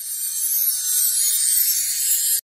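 Sound effect for an animated logo end card: a high, hissing noise that swells up and then holds steady.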